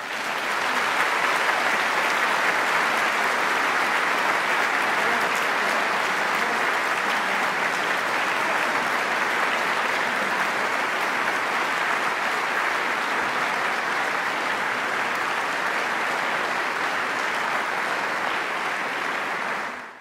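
A large audience applauding steadily, a dense sustained clapping that cuts off suddenly just before the end.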